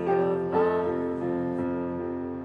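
Music: a woman singing a short phrase over a keyboard, with held piano chords slowly fading away after it.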